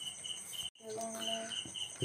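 Insect chirping, likely a cricket: a short high chirp repeating evenly about four times a second, broken by a brief dropout just before the middle.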